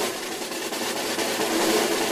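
A snare drum roll sound effect building anticipation, a dense steady rattle that starts suddenly and swells slightly louder.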